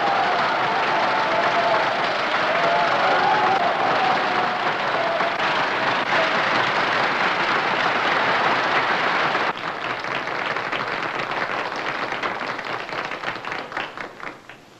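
A concert-hall audience applauding loudly. About nine and a half seconds in it drops suddenly to scattered clapping that thins out and dies away.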